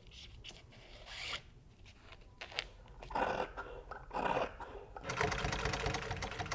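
Scissors cutting through black upholstery material, with two louder cuts in the middle. About five seconds in, a sewing machine starts stitching rapidly.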